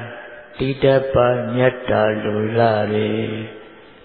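A Buddhist monk's male voice chanting a recitation: a couple of short intoned phrases, then one long, level held note that fades near the end.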